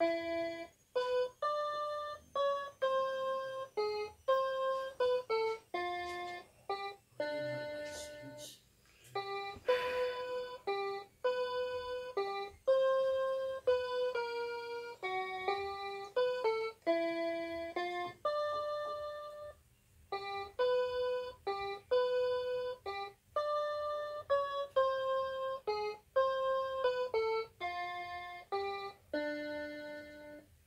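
Portable electronic keyboard playing a single-line melody, one note at a time, with short gaps between the notes.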